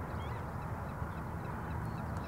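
Birds calling over a steady low background rush, with faint scattered chirps higher up.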